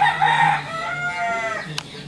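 A rooster crowing: one long call that rises and then falls slightly, lasting about a second and a half.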